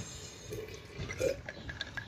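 A child sipping and swallowing Coca-Cola from a glass mug: faint, scattered liquid and gulping sounds.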